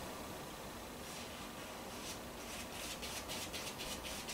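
Faint strokes of a paintbrush on canvas, a run of short soft scratches that start about a second in and come closer together near the end, over a steady room hiss.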